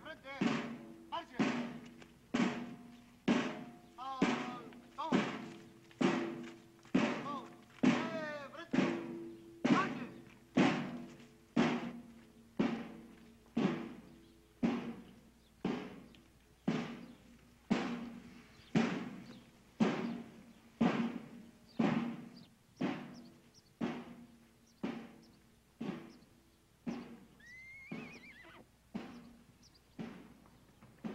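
Slow, steady drumbeat, about one stroke a second, each stroke dying away before the next, with a low held note under the first half. A horse whinnies near the end.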